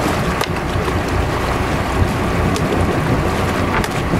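Wind buffeting the microphone over the steady drone of a boat's engine and water washing against the hull, with a few sharp knocks as a gaffed mahi-mahi is hauled up the side.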